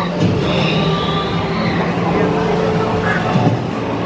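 Steady blend of a dark boat ride's background soundscape and low voices, with a few high whistling calls in the first couple of seconds.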